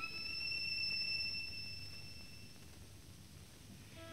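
Solo violin holding one very high note that fades away over about two and a half seconds, leaving only the hiss and low rumble of a 1936 recording before the music resumes at the very end.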